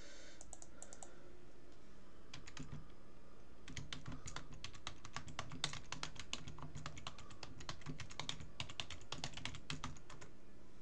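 Typing on a computer keyboard: a few scattered keystrokes at first, then a fast, steady run of key clicks from about four seconds in.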